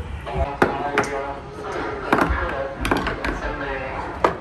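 Indoor play-area din: background children's and adults' voices chattering, with several sharp knocks and taps scattered through.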